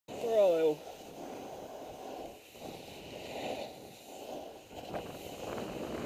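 A short voice call at the very start, falling in pitch, then the steady rush of a snowboard sliding down a groomed slope, with wind on a helmet camera's microphone.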